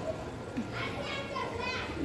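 Faint, high-pitched children's voices, a few short calls or syllables over a low steady background hum.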